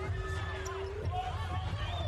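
Arena sound at a college basketball game: a basketball bouncing on the hardwood court under faint crowd voices, with a steady low tone that stops about halfway through.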